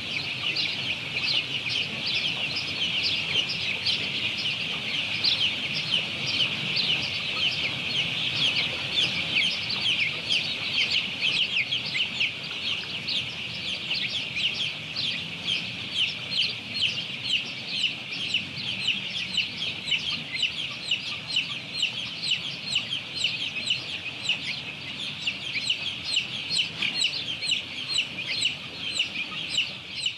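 Many young domestic chicks peeping together: a dense, unbroken chorus of short, high-pitched cheeps.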